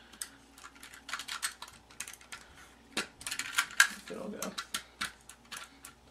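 Stampin' Up! SNAIL adhesive tape runner being worked against cardstock, giving quick runs of sharp plastic clicks and rattles, thickest about a second in and again around three to four seconds in. The tape is not advancing out of the runner.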